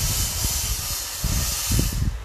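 A steady hiss that cuts off suddenly at the end, over irregular low rumbling and thumps.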